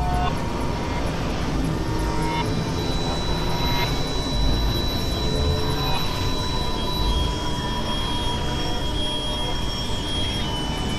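Experimental synthesizer drone-and-noise music: a thick, steady noisy drone with a low rumble, over which thin high tones are held for several seconds and then shift to a new pitch.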